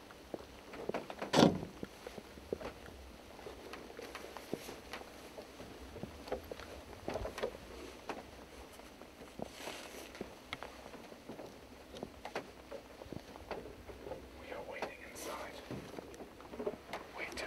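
Boots and hands on a wooden high-seat ladder as a man climbs down, giving scattered knocks and creaks on the rungs with clothing rustling. A louder knock comes about a second and a half in.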